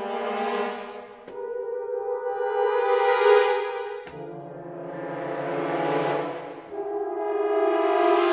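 Sampled French horn section (ProjectSAM Symphobia 4: Pandora 'Horns Cluster Crescendo' patch) playing dense cluster chords in repeated crescendo swells. Each swell builds to a peak every two to three seconds and falls away as the next chord comes in.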